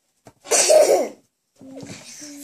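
A person coughs once, a short cough about half a second in.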